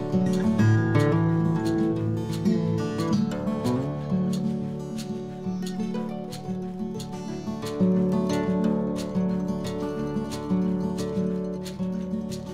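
Background music: an instrumental track led by plucked and strummed acoustic guitar.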